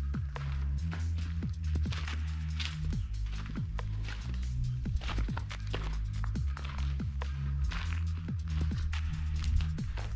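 Background music with a steady beat of short drum hits over held deep bass notes that change pitch every few seconds.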